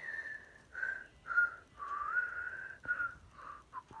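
Someone whistling a short run of about six clear notes, mostly stepping downward, with a longer note near the middle that slides up in pitch.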